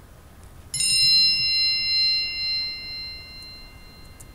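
A single bright 'bing' chime sound effect, struck about a second in and ringing out on several high tones that fade away over two to three seconds. It is the quiz's cue to pause and write down an answer.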